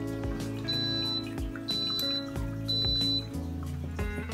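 Background music with a steady beat, over three short high-pitched beeps about a second apart from a drip coffee maker signalling.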